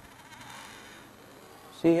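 A faint, even hiss with no clear source, then a man's voice starting to speak near the end.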